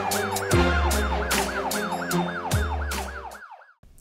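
TV title jingle: electronic music with a steady beat and a fast warbling siren-like effect, about four swoops a second. It fades out about three and a half seconds in.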